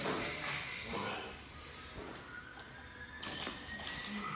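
Loaded barbell with bumper plates pulled from the floor in a squat clean, the bar and plates rattling sharply as it is caught on the shoulders about three seconds in. Gym music plays faintly underneath.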